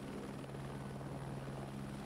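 Helicopter in flight, heard from inside the cabin: a steady low hum with an even noise over it.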